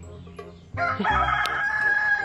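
A rooster crowing once, a long held call that starts about three-quarters of a second in, over faint background music with a low beat.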